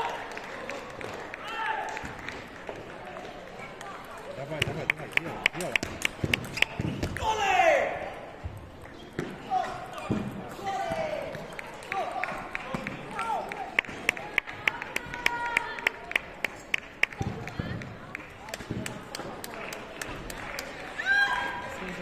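Table tennis rallies: the plastic ball clicking quickly and evenly off the table and rubber paddles in several runs of rapid ticks. Near the middle comes one loud shouted call, and voices sound between the rallies.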